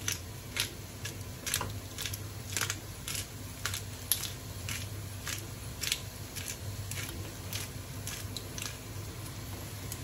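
Hand-twisted pepper grinder cracking black peppercorns: a run of short crunching clicks, about two a second, as the top is turned back and forth.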